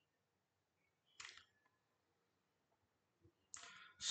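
Near silence, broken by two brief faint clicky noises: one about a second in and another just before the end.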